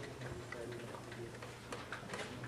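Faint, irregular light clicks over a steady low hum of room tone.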